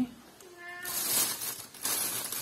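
A domestic cat meows once, briefly, about half a second in, followed by about a second of loud rustling as the phone brushes against clothing.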